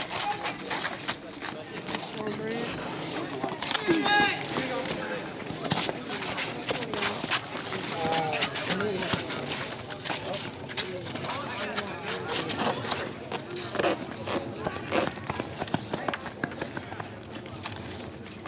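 Brooms and sticks clacking and scraping against each other and the wet pavement in a scrappy broomball scrum, with running footsteps and scattered shouts from the players.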